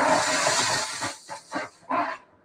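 Lithium-ion 21700 cell in thermal runaway, venting with a loud hiss as the runaway spreads to the neighbouring cells. After about a second the hiss dies down into a few sharp crackles.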